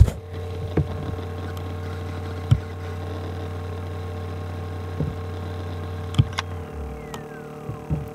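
Laptop hard drive in an Acer Aspire spinning with a steady hum and a few scattered clicks. Near the end the hum drops away and a whine falls steadily in pitch as the platters spin down: the drive going to sleep on its own. This happens every twenty or thirty seconds and stalls the Windows installation, and the owner can't tell whether the drive, the motherboard or the EFI firmware is at fault.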